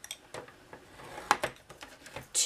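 Paper trimmer being used to score cardstock: a few light clicks and a faint scrape, with one sharper click a little past halfway.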